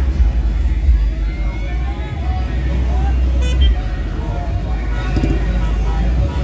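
Slow-moving vehicles' engines running with a steady low rumble, under the talk and calls of a street crowd.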